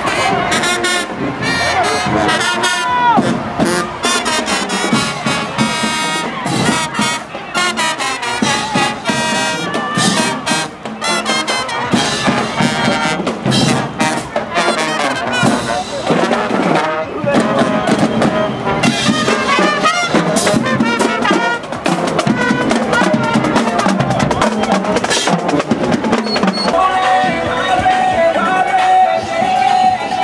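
High school marching band playing as it passes, led by its brass section of trumpets, trombones and sousaphones, with sharp percussion hits and crowd voices underneath.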